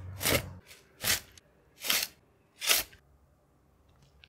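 A flat garden spade cutting into lawn turf and soil: four short scraping cuts, a little under a second apart.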